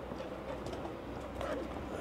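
Low wind noise rumbling on a microphone that has no windscreen, with faint outdoor background.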